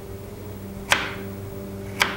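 A single sharp knock on a kitchen counter about a second in, over a faint low steady hum.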